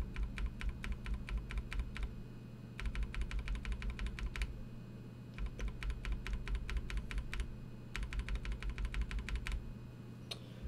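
A NovelKeys Cream linear keyboard switch lubed with Krytox 205g0 being pressed rapidly over and over under an NP profile keycap on an IDOBAO ID80 board: four runs of quick keystroke clacks with short pauses between. The thick lube gives it a deeper, smooth, dampened sound.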